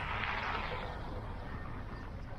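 Steady low rumble of a car driving, with a swell of tyre hiss on wet pavement in the first second as an oncoming car passes.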